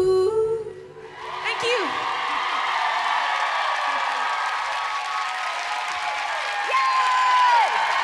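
The last held sung note of the song dies away within the first second. A studio audience then cheers and applauds, with whoops that rise and fall above the clapping.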